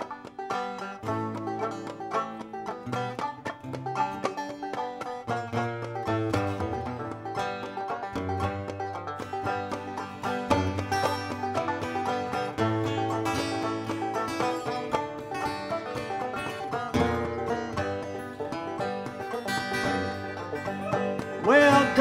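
Banjo and acoustic guitar playing the instrumental introduction of a folk song: a steady run of plucked banjo notes over guitar chords.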